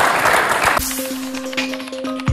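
Studio audience applause that cuts off abruptly under a second in. It is replaced by a television channel's ident music: held steady tones with light ticking percussion.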